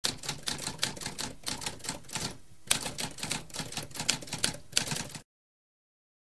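Typewriter keys striking in quick succession, roughly four or five a second, with a brief pause about halfway through before the typing resumes; it cuts off suddenly a little under a second before the end.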